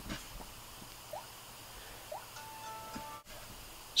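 Samsung Galaxy S III smartphone powering off: a light tap, two faint short rising blips, then a brief chime of several pitches held for about half a second, over quiet room tone.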